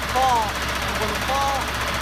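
Peterbilt garbage truck's diesel engine running at idle, a steady low rumble, with voices talking over it.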